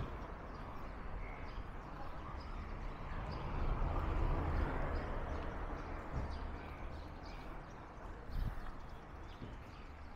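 Outdoor city street ambience: a steady background of traffic and street noise, with a low rumble that swells about three to five seconds in and a brief bump about eight and a half seconds in.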